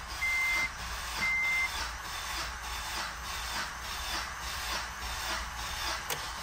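Two short electronic chime beeps from the car's dash, then the Acura RSX's four-cylinder engine cranking over on the starter without starting, its spark plugs removed for a compression test. The cranking is a steady whir with an even pulse about twice a second.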